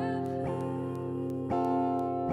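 Acoustic guitar strummed slowly, chords left ringing between strokes, with a fresh strum about every second.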